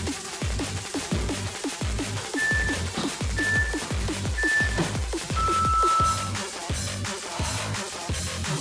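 Electronic dance music with a pounding kick drum, over which an interval timer counts down: three short high beeps a second apart, then one longer, lower beep marking the end of the work interval.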